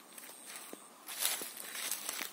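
Footsteps crunching on dry fallen leaves, with the loudest crunch about a second in.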